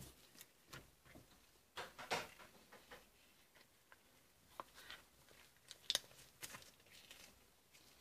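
Faint, scattered small clicks and taps, with the loudest about two seconds in and just before six seconds in.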